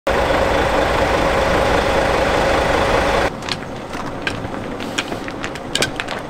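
Bus engine idling close by, a loud steady rumble that cuts off abruptly about three seconds in. It gives way to quieter outdoor background with scattered light clicks and taps.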